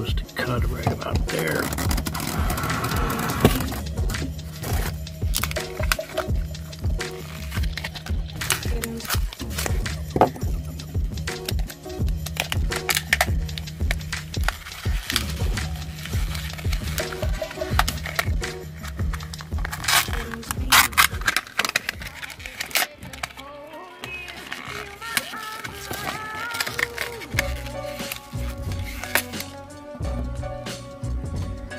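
Background music with a steady bass line, over repeated crackling and tearing of a microSD card's cardboard-and-plastic blister packaging being opened by hand.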